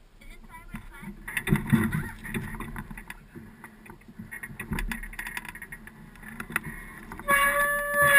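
Indistinct voices and scattered clicks, then near the end a loud, steady horn toot lasting about a second.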